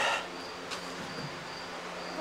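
Faint steady high-pitched insect drone, with a single light tap about three-quarters of a second in.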